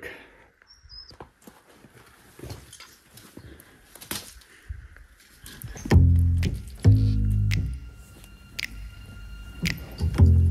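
Faint scattered crackles and clicks of loose rubble and debris shifting as a person crawls into a hole. About six seconds in, music with heavy bass notes comes in and becomes the loudest sound.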